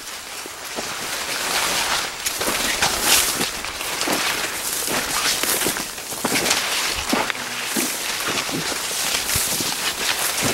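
Corn leaves rustling and swishing as someone walks between the rows and pushes through the plants, in uneven, irregular swishes.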